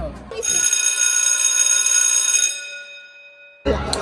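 A bell-like chime sound effect rings out half a second in as several steady tones at once. It holds for about two seconds, then fades away over about a second.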